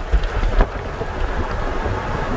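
Car driving with the side window open: wind buffeting the microphone and road noise in a steady low rumble.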